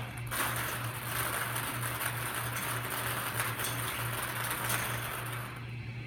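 Numbered draw balls rattling and tumbling inside a spinning wire bingo cage, a dense clatter that stops shortly before the end.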